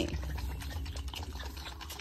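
A lamb suckling milk from a plastic bottle with a rubber nipple: sucking and slurping with irregular small clicks.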